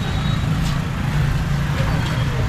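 Busy street traffic, mostly motorcycle engines running close by, making a steady low hum under a wash of street noise.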